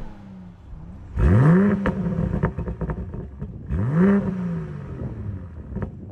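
BMW M240i xDrive's 3.0-litre turbocharged straight-six in Sport Plus revved twice while stationary, each rev rising sharply and falling away, with little pops and crackles from the exhaust as the revs drop.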